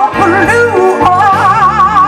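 Live blues band playing: a woman sings long, wavering wordless notes with wide vibrato over electric guitar, bass, keyboard and drums.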